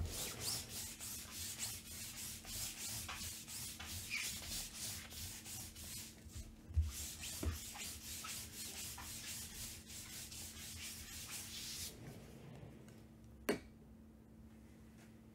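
Rapid back-and-forth rubbing strokes, about three a second, as a hand sweeps a white cylindrical tool across a tabletop mat. The strokes stop about twelve seconds in, and a single sharp click follows near the end.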